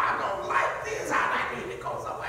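A man's voice in short, voice-like bursts about every half second that the speech recogniser did not turn into words.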